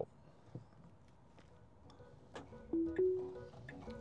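Tesla Model 3's two-note rising chime as Full Self-Driving engages, a short low tone followed by a slightly higher, longer one, a little past halfway through. A faint click comes just before it, in an otherwise quiet cabin.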